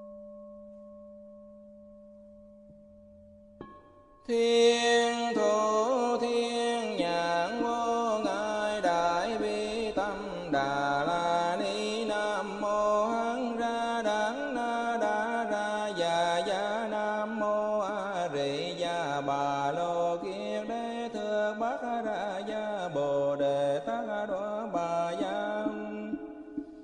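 Buddhist devotional chant music. A held, ringing tone fades away; then, about four seconds in, a sung chant melody starts abruptly and carries on with long, gliding notes over a low sustained line.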